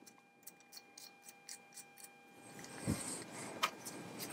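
Faint, even ticking, about four ticks a second, then rustling handling noise with a soft knock and a click as small plastic phone accessories are picked up and handled.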